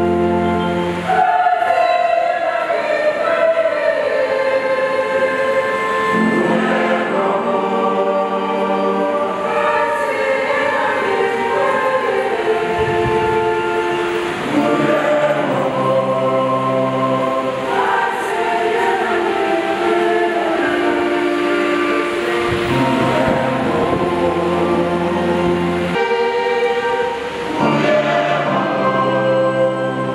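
A choir singing a slow piece in held chords that shift every second or two.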